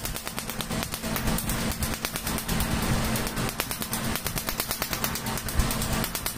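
Tattoo-removal laser handpiece firing a rapid, even train of sharp snaps, one for each pulse striking the tattooed skin to break up the ink, over a steady low hum from the laser unit.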